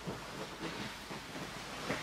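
Faint rustling of jiu-jitsu gis and bodies shifting on a training mat, over a steady background hiss.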